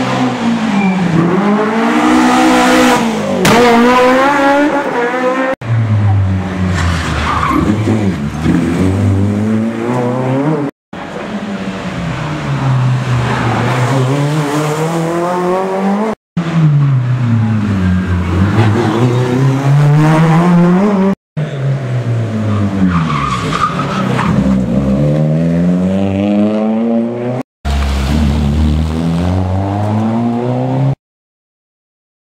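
Rally cars passing one after another. Each engine drops in pitch as the car slows for the junction, then revs up hard through the gears as it pulls away. The passes are joined by abrupt cuts.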